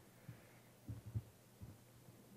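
Faint, soft low thumps of a laptop being worked on a lectern (keys and trackpad taps carried through the podium microphone), a few scattered taps over a low steady hum.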